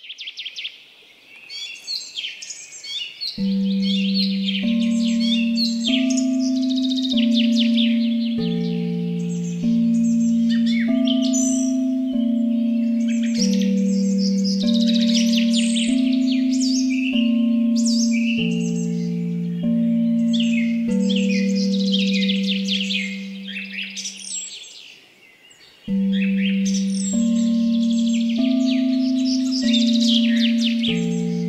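Birds chirping and singing throughout, layered with a low sustained tone that steps to a new note about once a second. The tone starts a few seconds in and breaks off briefly about five seconds before the end.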